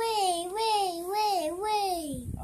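A young child's high, wavering singsong vocal sound, the pitch rising and falling in waves, made as a flying noise for a toy dragon. It breaks briefly about a second and a half in.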